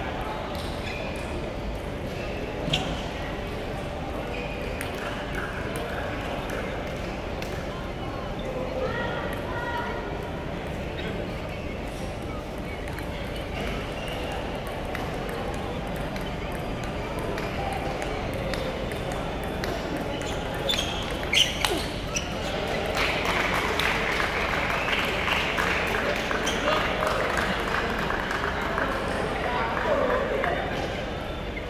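Table tennis balls clicking off bats and tables, scattered at first and then in quick, dense runs of rallies over the last third, over a steady background of voices echoing in the large hall.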